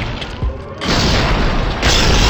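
Movie-style sound effects for a CGI robot fight: deep booms with music under them, then a loud rush of noise a little before halfway. Near the end a harsh, even hiss of TV static cuts in.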